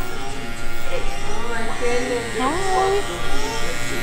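Electric hair clippers buzzing steadily as they cut a toddler's hair.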